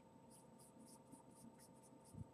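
Faint, quick strokes of a stick of vine charcoal scratching on drawing paper, about five a second, as a dark shadow area is built up.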